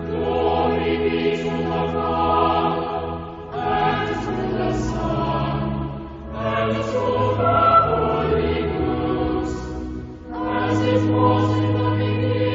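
A choir singing sustained chords in a service setting, in phrases a few seconds long with brief breaks between them, about three and a half, six and ten seconds in.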